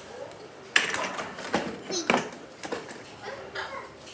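Plastic ride-on toy car clattering and knocking as it is driven over a hard tiled floor toward the camera. The knocks start suddenly about a second in, and a child's voice sounds briefly amid the clatter.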